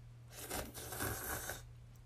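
Noodles being slurped up from a bowl: one noisy slurp lasting about a second.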